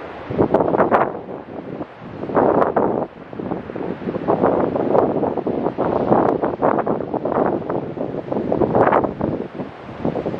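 Wind buffeting the microphone in uneven gusts, mixed with ocean surf breaking against a pier's pilings and rock jetty.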